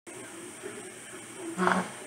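A man with a tracheostomy tube voices a short, strained "mm, uh-huh" about one and a half seconds in, over a steady faint hiss.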